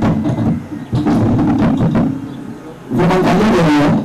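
Loud voice in three bursts, each about a second long, with some held, sung-like pitches.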